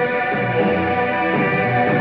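Rock band playing an instrumental passage live: several held, sustained notes sound together over bass and drums, in a dull, treble-less concert recording.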